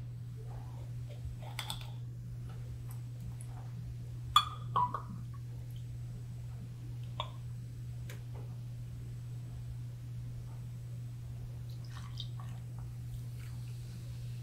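Ginger beer poured from a glass bottle into a small metal measuring cup, with faint liquid sounds and a few light clinks of glass and metal, the sharpest about four seconds in. A steady low hum lies under it.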